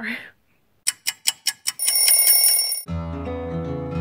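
A quick run of about six ticks, then an alarm ringing with a steady high tone for about a second, cut off about three seconds in by acoustic guitar music.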